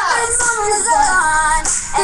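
A high, young-sounding voice singing a pop song over a backing music track, with a falling glide in pitch right at the start.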